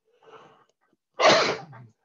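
A man's single loud, explosive expulsion of breath, of the cough or sneeze kind, about a second in. A faint short breath in comes before it.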